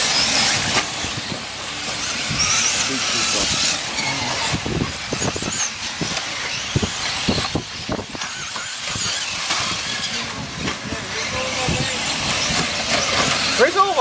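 Electric 4WD short course RC trucks racing on a dirt track: a high motor whine that rises and falls with the throttle, over tyre hiss and scattered knocks as the trucks land and hit the track.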